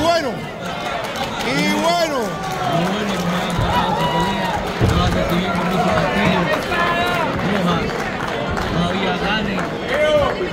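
Several men's voices shouting and calling out over crowd noise, overlapping throughout with no single voice leading.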